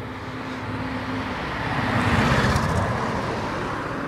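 A car passing by on the street, its tyre and engine noise swelling to a peak about halfway through and then fading.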